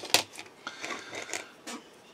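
Resin model-kit parts clicking as they are handled and set down: one sharp click just after the start, then a run of lighter clicks and rustles over the next second and a half.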